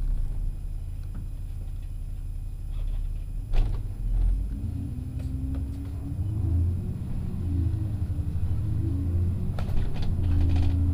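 Double-decker bus engine and drivetrain heard from inside the bus: a steady low rumble, then a knock about three and a half seconds in, after which the engine note rises and falls as the bus moves off and accelerates.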